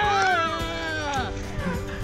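A person's high-pitched excited squeal, one long call that falls in pitch over about a second and a half, with background music under it.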